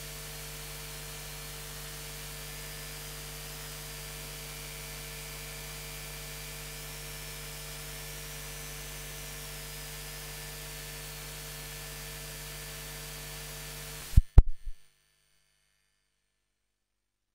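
Steady electrical mains hum, several low tones with a faint wavering high whine above them. About fourteen seconds in, a quick cluster of loud clicks, and then the sound cuts off to dead silence.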